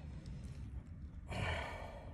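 A man's heavy, breathy exhale, like a sigh, about a second and a half in, over a low rumble.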